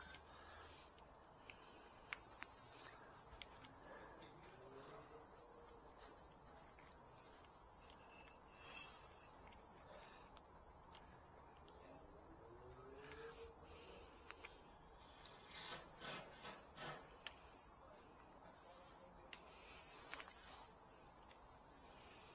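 Near silence, with faint scattered clicks and rubbing from hands handling the plastic body of a cordless power tool and fitting a cable tie around its handle.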